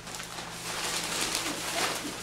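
Thin plastic shopping bag rustling and crinkling as hands rummage in it and pull out an item, in irregular bursts of crinkle that grow stronger towards the end.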